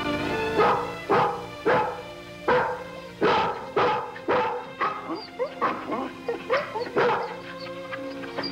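A dog barking over and over, about a bark every half second, with shorter, higher yips coming in during the second half, over background music.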